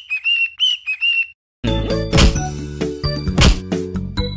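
A quick string of short, high whistled notes, a carefree little tune. About a second and a half in, jingly background music with a beat starts.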